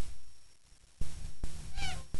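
A short, high, meow-like animal call near the end, over low rumble and several sharp knocks on the microphone.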